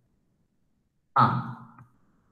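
Silence for about a second, then one short spoken syllable, "haan" ("yes").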